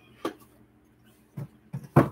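A few light knocks and clicks as a salt shaker is handled and set back on a shelf, the last click near the end the sharpest.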